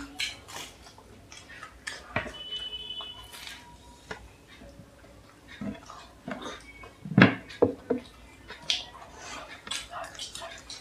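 Eating and drinking at a table: chewing and sipping, with clinks and knocks of clay chai cups and plates. The loudest knock comes about seven seconds in, followed by a few smaller ones.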